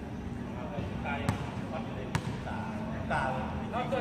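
Basketball bouncing on a hard concrete court: two sharp bangs a little under a second apart, with players' shouts toward the end.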